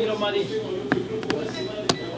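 Faint background voices, with three sharp clicks in the second half, the last the loudest.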